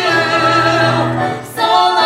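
Sung duet with accompaniment: voices holding long, slightly wavering notes, dipping briefly about one and a half seconds in before the next phrase begins.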